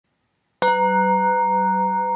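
A singing bowl struck once about half a second in, then ringing on steadily with several overtones.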